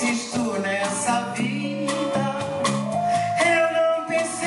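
Live band music with a woman singing over it into a microphone, her sustained notes bending in pitch.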